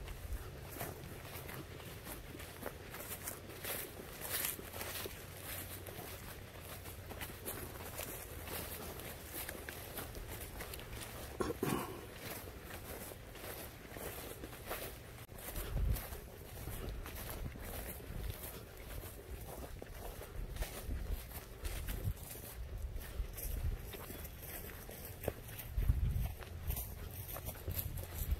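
Footsteps walking along a grassy dirt trail, with irregular light crunches and scuffs throughout. Low wind buffeting on the microphone comes and goes, and a brief pitched sound, like a short voice, comes about twelve seconds in.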